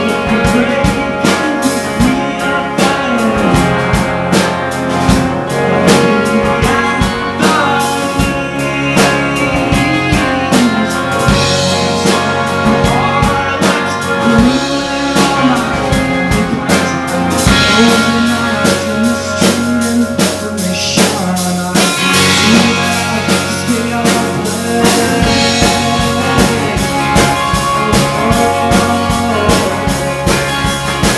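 Live indie rock band playing a song: electric guitars, bass guitar and drum kit, loud and continuous.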